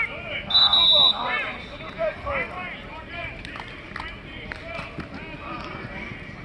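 Coaches and players calling out on a football practice field, with a short steady blast of a whistle about half a second in, the loudest sound. A few sharp taps come through between the voices.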